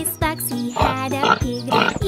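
A pig oinking about three times over the backing music of a children's song with a steady beat.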